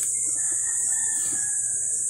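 A rooster crowing faintly, one long drawn-out call, over a steady high-pitched insect buzz.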